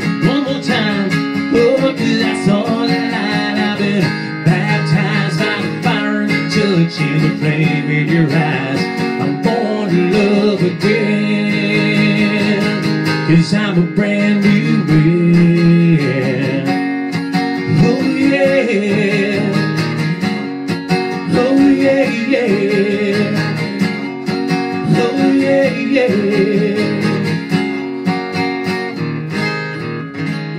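Country song performed solo: a steel-string acoustic guitar strummed steadily under a man's singing voice.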